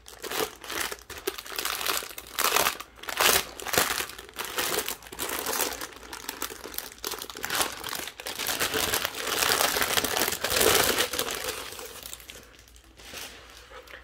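Paper crinkling and rustling in repeated bursts as a rolled art print and its protective paper sheet are handled and unrolled out of a cardboard poster tube. A longer, denser rustle comes about two-thirds of the way through, and it quiets down near the end.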